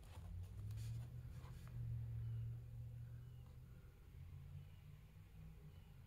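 Faint handling noise as a finger swipes and rubs across a tablet's screen and case, a few soft rubs and clicks over a low hum.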